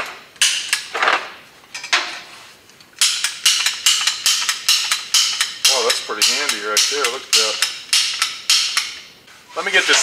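Metal parts of a hand tube bender kit clicking and clinking as they are handled, a few scattered clicks at first, then a quick even run of about three a second.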